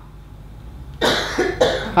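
A man coughing twice into a handheld microphone, two short harsh bursts about a second in.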